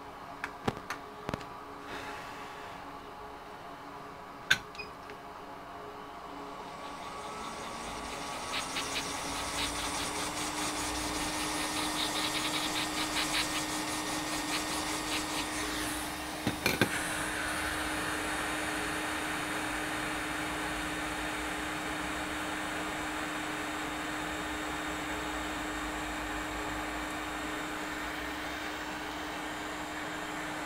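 A small electric blower motor spins up about six seconds in with a rising hum, then runs steadily. A few sharp clicks come before it and a couple of knocks midway.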